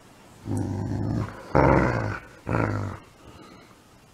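Dog growling in play three times while tugging on a rope toy, each growl short and rough.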